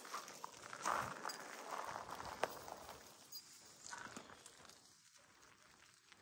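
Faint rustling and a few light clicks of footsteps and movement on dry pine needles and sticks, dying away in the second half.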